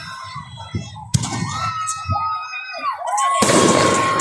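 Fireworks going off: two sharp bangs about a second in, then a loud hissing crackle from about three and a half seconds, with a steady tone over it.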